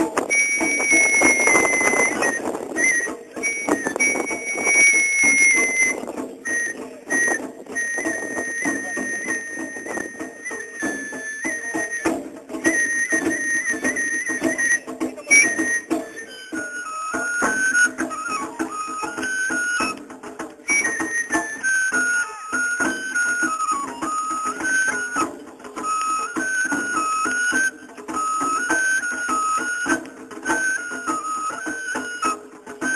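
Japanese festival hayashi music: a high bamboo flute plays a melody over drum strikes. The flute holds long notes at first, then from about halfway moves into a quicker tune that steps up and down.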